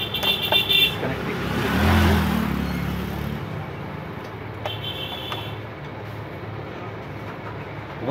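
Street traffic: a vehicle passes, loudest about two seconds in, with a short high-pitched toot at the start and another about five seconds in.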